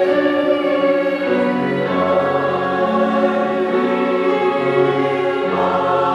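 Mixed church choir singing held chords with piano accompaniment, the harmony shifting about two seconds in and again near the end.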